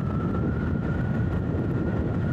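Motorcycle riding at a steady cruising speed: a dense, even rumble of engine and road noise with a thin steady whine on top.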